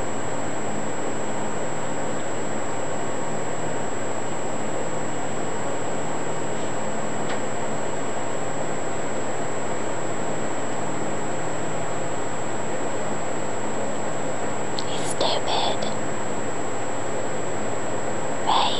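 Steady hiss of background noise with a faint constant high whine. About fifteen seconds in comes one brief high-pitched sound lasting under a second.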